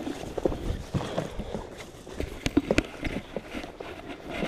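Footsteps along a grassy trail with clothing and gear rustling, and a few sharp knocks and clicks from the camera being handled.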